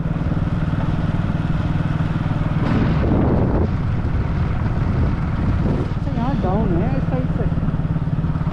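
Motorcycle engine running steadily at road speed as the bike is ridden, with a brief rush of noise about three seconds in.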